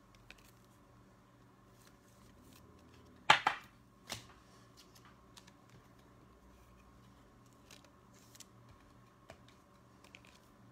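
Trading cards being slid into soft plastic sleeves by hand: faint crinkles and ticks of card and plastic, with a louder rustle about three seconds in and a shorter one a second later.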